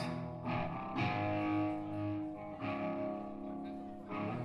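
Electric guitar through effects playing slow, sustained chords, each left to ring, with a new chord struck about a second in and another a little past halfway.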